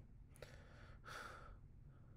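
Near silence, with one soft breath from a person at the microphone about a second in.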